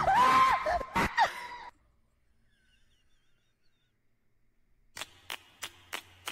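Cartoon soundtrack: a high, sliding yell with two sharp knocks, cut off abruptly a little under two seconds in. Near silence follows, and then, about five seconds in, a steady run of sharp clicks begins, about three a second.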